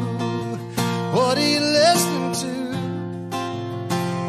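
Country song playing: strummed acoustic guitar under a bending, sliding melody line.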